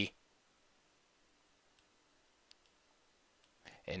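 A few faint computer mouse clicks, about four, spread through the middle of an otherwise quiet stretch, as pieces are moved on an on-screen chess board.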